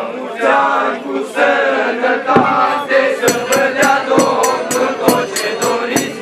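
A group of young carollers chanting a New Year carol together. From about three seconds in, jingling percussion joins in a steady quick beat, several strikes a second.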